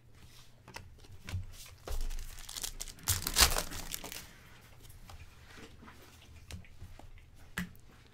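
Glossy trading cards being flipped through by hand, the stiff card stock sliding and rustling against itself with small clicks. The handling is busiest and loudest in the first half and thins to a few faint clicks later.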